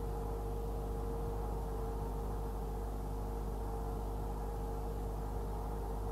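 Steady electrical hum and hiss in the recording's background, with a constant higher tone over a deep low drone and nothing else happening.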